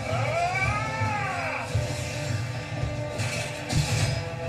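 Anime soundtrack music, with a single long pitched cry over it that rises and then falls in pitch over about a second and a half near the start.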